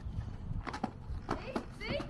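Indistinct voices over a low rumble, with several sharp knocks in the second half.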